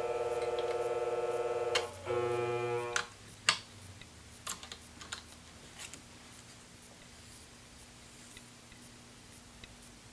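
The electric motor of a flat-hone shear sharpening machine runs with a steady hum. About two seconds in it is switched off with a click, and it winds down, its pitch dropping slightly, until it stops about a second later. A few light clicks and knocks from handling the shear and tools follow.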